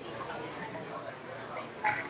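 A faint, distant voice of an audience member asking a question off-microphone, over room noise, with a short sharp sound near the end.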